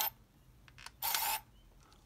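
Minolta Freedom Dual's small lens-drive motor whirring briefly twice as the lens and viewfinder switch focal length: one short whir ends right at the start, and a second of under half a second comes about a second in.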